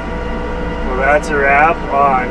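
Steady low drone of a Case IH Patriot sprayer's engine and road noise heard inside its cab while driving, with a man starting to talk about a second in.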